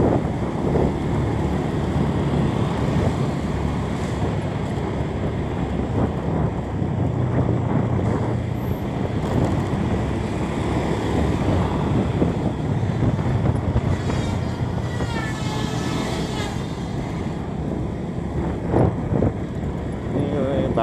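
Steady engine rumble and road noise from a vehicle driving, with wind buffeting the microphone. A brief higher wavering sound comes in about three-quarters of the way through.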